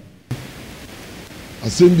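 A pause in a man's speech through a microphone: a brief dropout at the edit, then steady background hiss and room noise, with his voice starting again near the end.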